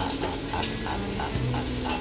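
Gloved hands mixing and squeezing shredded cooked meat in a disposable aluminium foil tray, a continuous moist, irregular rustling and squishing.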